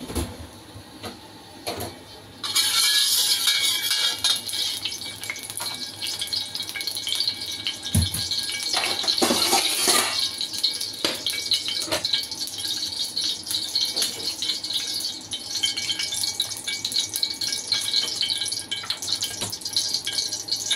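Cooking oil sizzling and crackling in a wok on a gas stove as it heats before frying. A steady hiss with many small crackles starts suddenly about two and a half seconds in and keeps going.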